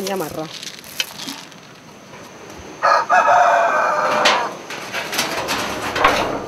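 A rooster crowing once, a single long call of about a second and a half starting about three seconds in.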